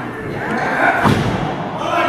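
A thud on the wrestling ring's mat about a second in, with voices calling out in a large hall.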